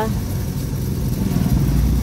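Car engine and road noise heard from inside the cabin while driving along a street: a steady low rumble that swells a little in the second half.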